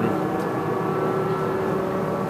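A laundry dryer exhaust fan running steadily: a continuous hum with a constant tone held through it.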